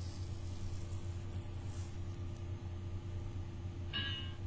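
Low steady electrical hum with room tone from the recording setup, and a brief high blip near the end.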